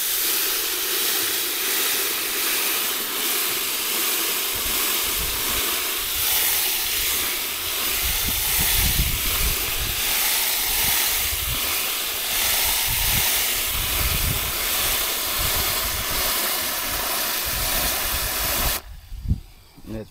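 Garden hose spray nozzle hissing steadily as water sprays into a plastic bucket of chicken and rabbit manure, churning it up; deeper splashing joins from about four seconds in. The spray cuts off abruptly about a second before the end.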